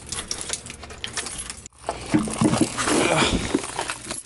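A bunch of keys jangling on a ring as a key is turned in a doorknob lock. Partway through, the sound cuts off for a moment and is followed by louder clattering of clear plastic tackle boxes being handled.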